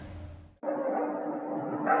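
Steady hum and hiss of the mosque's public-address system, with low room rumble. The sound cuts out completely for a moment about half a second in, then returns, and the muezzin's voice begins the call to prayer right at the end.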